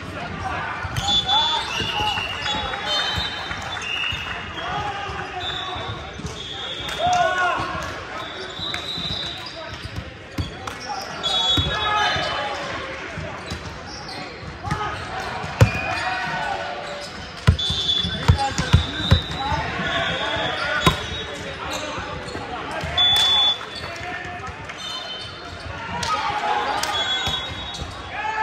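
Echoing sports-hall din of a volleyball game: overlapping shouts and voices of players and spectators, sharp thuds of volleyballs being hit and bouncing on the floor, and short high squeaks of sneakers on the hardwood court.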